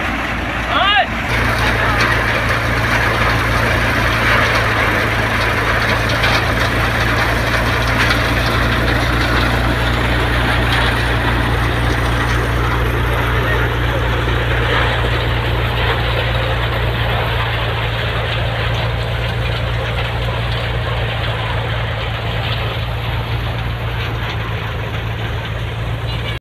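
Groundnut thresher running under load as groundnut plants are fed through it: a steady machine drone with a dense rushing, rattling haze over it. The drone's low hum grows stronger about a second in.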